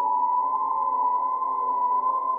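A steady, held electronic drone tone, high and unwavering, with fainter lower tones sounding under it. It is a sound effect laid over a meme image.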